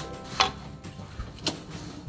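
Wooden spatula stirring noodles in a wok, knocking against the pan a few times in sharp clicks, the loudest under half a second in.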